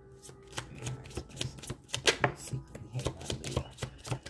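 A deck of oracle cards being shuffled by hand: a quick, irregular run of card flutters and edge clicks.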